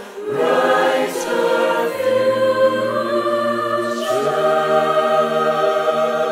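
Mixed SATB choir singing a cappella: long sustained chords that move to a new chord about every two seconds, with brief soft consonant hisses between them.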